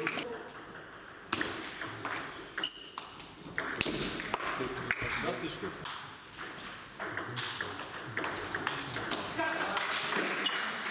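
Table tennis balls clicking off bats and the table in a rally, with further ball clicks from neighbouring tables.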